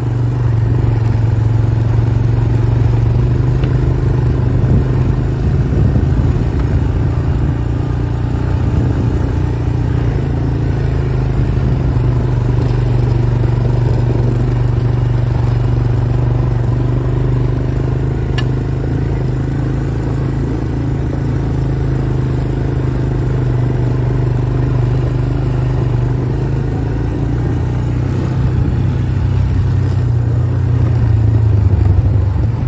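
ATV engine running at a steady, even pitch while riding along a dirt trail. A single sharp click comes about two-thirds of the way through.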